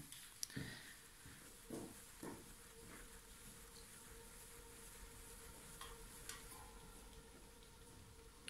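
Near silence: room tone with a faint steady hum and a few faint clicks.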